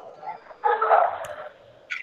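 Muffled background noise coming through a pupil's unmuted microphone on a video call, swelling for about a second in the middle.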